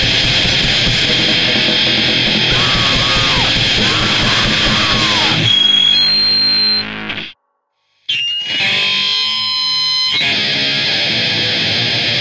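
D-beat raw punk played loud, with distorted guitars and pounding drums. About halfway the band stops and sustained guitar feedback rings on, then cuts to a brief silence. Feedback tones come back and the full band crashes in again near the end.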